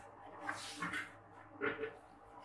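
Wet squishing of hands kneading spice-coated raw beef pieces in a ceramic bowl, with a short pitched sound near the end.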